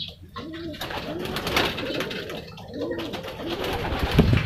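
Racing pigeon cooing: a run of short, low coos, each rising and falling in pitch, repeated about every half second.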